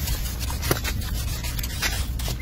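Small hand trowel rubbing and scraping across wet cement as it smooths the surface, with a couple of sharper scrape strokes, one about a third of the way in and one near the end.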